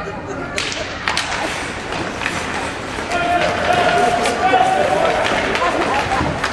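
Ice hockey play after a faceoff: scattered sharp clacks of sticks and puck on the ice in a rink. Voices shout, with one long held call in the second half.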